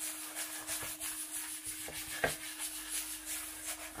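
A 120-grit sanding block rubbed back and forth by hand over a fine-milled aluminium plate, a repeated scratching of strokes. The sanding roughens the too-smooth surface so paint will adhere.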